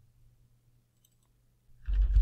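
Faint computer mouse clicks and a few light keyboard ticks over a low steady electrical hum, as a layer in the painting software is selected and renamed.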